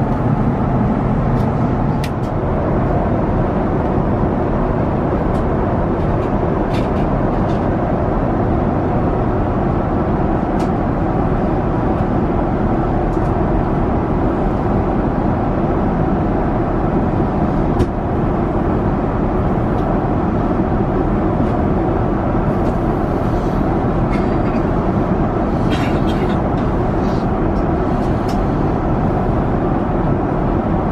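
Steady cabin noise of an Airbus A350 airliner in flight: an even, unbroken rush of engine and airflow noise at a constant level, with a few faint clicks.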